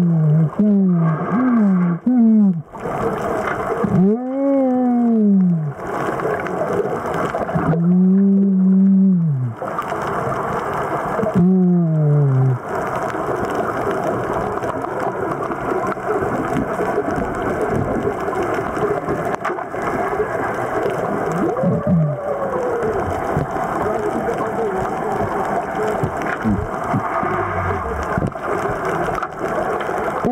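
Muffled, drawn-out 'oooh'-like vocal sounds from a person heard underwater, each rising and then falling in pitch, several times in the first half and once more later. Under them runs a steady rushing underwater noise.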